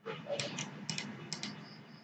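Computer keyboard and mouse clicking: about six sharp clicks, several in quick pairs.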